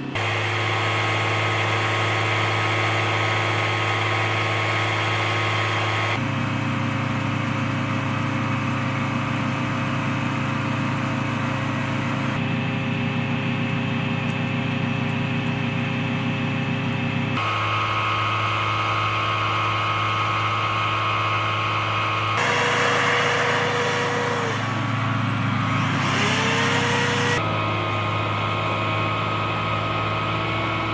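Turbine engine and ramp machinery noise around a ski-equipped C-130 transport: a steady whining hum with several held tones, which changes abruptly every five or six seconds. Late on, for a few seconds, a louder hiss rises over it, with a tone that dips and then climbs again.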